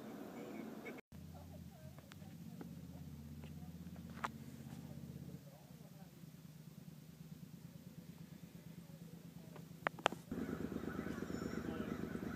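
Faint parking-lot background: a low steady hum for the first few seconds, a few short sharp clicks, and faint voices, louder near the end.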